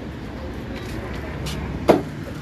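Steady low rumble of a vehicle engine running, with a single sharp knock near the end.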